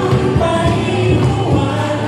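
Live acoustic band playing a song: singing over strummed acoustic guitar and cajon.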